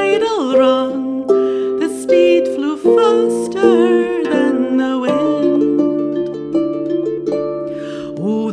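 Music from a slow traditional ballad: a woman's voice singing over a plucked-string accompaniment, with the voice dropping out after about three and a half seconds and the strings carrying on alone.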